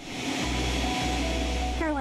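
Jet engines of a small business jet running on the ramp: a steady rushing noise with a deep rumble and a faint high whine.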